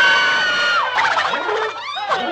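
Cartoon elephants shrieking and trumpeting together from a film soundtrack: one long high cry held for nearly a second, then a jumble of overlapping shrieks that thins out near the end.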